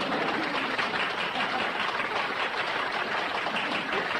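Audience applauding steadily after a barbershop quartet's song.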